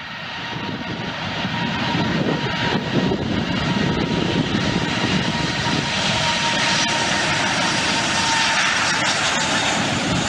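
Airplane engine noise, rising over the first couple of seconds and then running steadily, with a thin steady whine in it.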